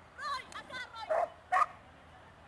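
Dog barking excitedly while running an agility course: a quick run of short, high yips followed by two loud barks about a second and a half in.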